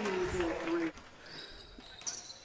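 A commentator's drawn-out "yeah" that trails off within the first second, then faint court sound with thin high squeaks of sneakers on the hardwood floor.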